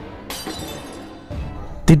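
Glass shattering: one sharp crash of breaking glass that fades away, added to a ghost-story narration. A voice starts just before the end.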